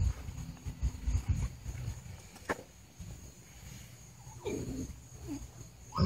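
Low rumbling bumps of wind and handling on the microphone, loudest in the first second or so, with a single sharp click about two and a half seconds in. About four and a half seconds in comes a brief low vocal sound, with a shorter one just after.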